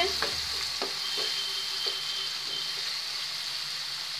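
Grated onion sizzling steadily in hot oil in a non-stick frying pan on a medium flame, stirred with a wooden spatula, with a few light scrapes of the spatula in the first couple of seconds. The onion has just begun to change colour.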